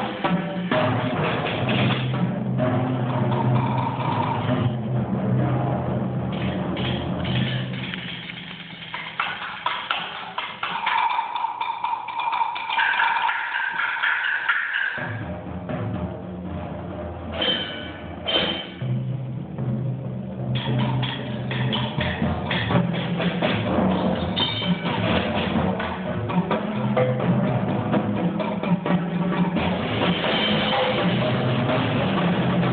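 Percussion ensemble playing, with timpani, drum kit and mallet instruments: dense rapid drum strikes over sustained low pitches. In the middle the low drums drop out for a softer passage of higher ringing tones, then the full ensemble comes back in.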